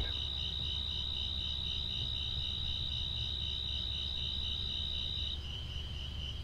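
Crickets singing: one steady high trill that cuts off near the end, over another cricket's even pulsed chirping, about five pulses a second, with a low steady hum underneath.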